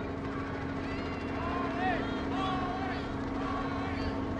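Scattered shouts and calls from a crowd lining a street, heard from a distance, over a steady low hum from vehicle engines.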